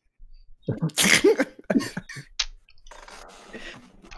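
A man laughing hard in several breathy, gasping bursts, trailing off into a softer exhale.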